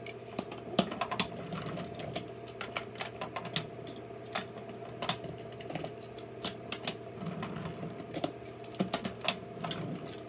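Wooden toy trains being pushed by hand along wooden track: irregular clicks and clatter of the wheels and wagons over the rail joints, over a low steady hum.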